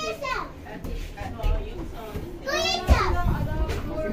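A child's high-pitched voice calling out, briefly at the start and again about two and a half seconds in, with a single thump near the three-second mark.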